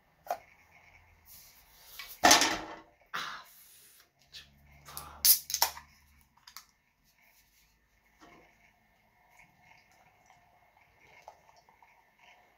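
An aluminium beer can being opened by its ring-pull: two loud sharp cracks with a hiss, about three seconds apart, in the first half. From about eight seconds in, a faint steady sound of beer being poured into a glass.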